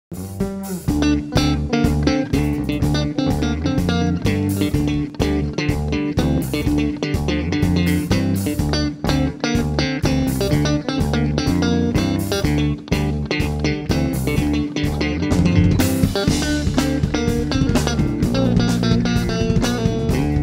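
A live band of electric guitar, bass guitar and drum kit playing instrumental music, without singing.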